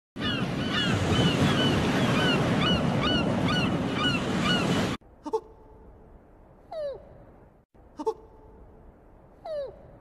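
Steady surf-like rushing with short, falling bird-like calls about twice a second, cutting off suddenly about halfway through. Then a much quieter stretch with four brief squeaky pitch glides, in two pairs.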